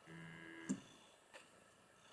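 Electronic keyboard sounding one short, steady low note for about half a second as a cat's paw presses a key, followed by a sharp click and, half a second later, a fainter click from the keys or panel.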